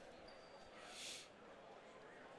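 Near silence: faint room tone, with one soft, brief hiss about a second in.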